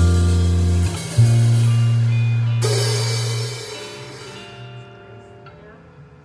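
Small jazz combo of bass, guitar and drum kit playing its final notes: a long low bass note, a cymbal crash about two and a half seconds in, and the whole band ringing and fading away.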